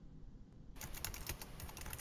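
Computer keyboard typing: a quick, rapid run of keystrokes that starts about three-quarters of a second in and lasts just over a second.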